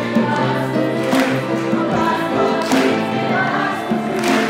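A group of young singers with microphones performing a song live, accompanied by grand piano, violins and conga drums.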